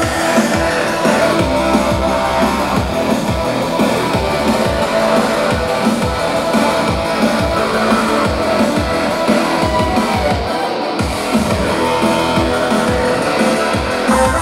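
Live band playing loud electronic rock: electric guitar over synthesizer and a fast, driving drum beat.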